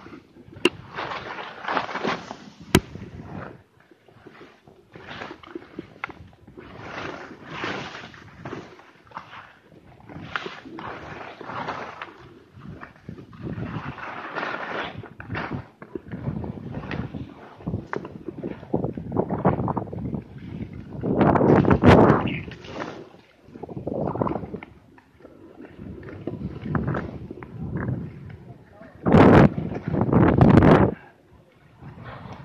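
Skis scraping and chattering over thin, patchy snow and bare ground in irregular bursts, with a couple of sharp clacks in the first few seconds and the loudest scrapes near the end.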